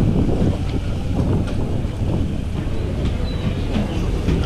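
Wind buffeting the microphone outdoors: a steady low rumble.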